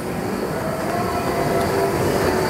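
Escalator running: a steady mechanical rumble with a faint hum, growing slightly louder.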